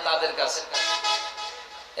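A man's chanting voice holding one long, steady note that fades away near the end.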